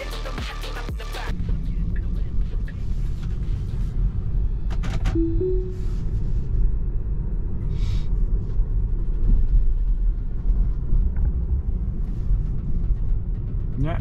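Steady low rumble of road noise inside a moving Tesla Model 3's cabin, with music faintly underneath. A short two-note tone sounds about five seconds in.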